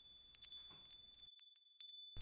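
Faint tinkling chimes: a run of light strikes with high ringing notes, laid over the picture as an edited-in sound effect. The room's background hiss cuts out about a second in while the chimes carry on.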